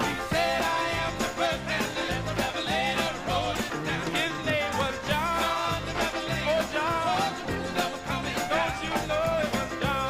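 Live band playing a song, with a steady drum beat and singing.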